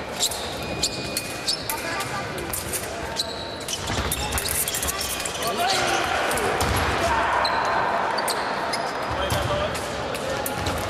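Fencers' footwork on a sports-hall piste, with repeated thuds and stamps and many sharp clicks. Voices are heard in the echoing hall. The sound grows louder and busier for a few seconds past the middle, as an exchange is fenced and a touch is scored.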